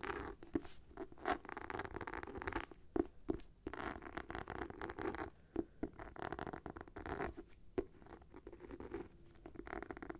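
Fingernails scratching on the textured cover of a black hardcover notebook, in repeated scratching strokes with a few sharp taps in between.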